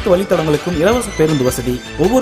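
A voice singing a melody, holding and bending its notes, over instrumental backing music.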